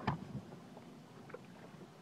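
Faint ambience aboard a small fishing boat trolling: a low steady motor hum with light scattered ticks and handling noises, and a short louder knock or breath right at the start.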